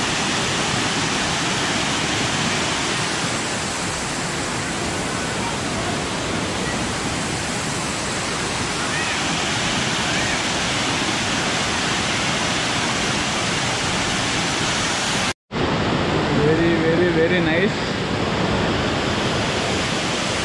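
Large waterfall cascading down rock ledges in several streams: a steady, even rush of water. The sound cuts out for a moment about fifteen seconds in.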